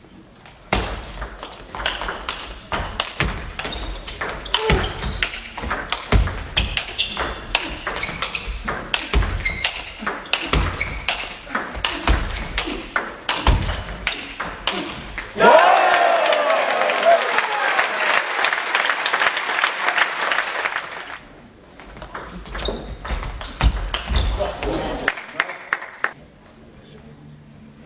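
Table tennis ball clicking back and forth off bats and table in a long rally, with the players' feet thudding on the floor. About fifteen seconds in, the rally ends and the crowd breaks into loud cheering and applause for about five seconds, then the ball clicks and thuds start again as play resumes.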